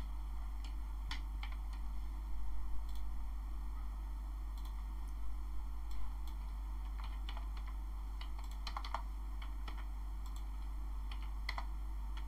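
Computer keyboard typing in short, irregular bursts of key clicks while code is edited, over a steady low hum.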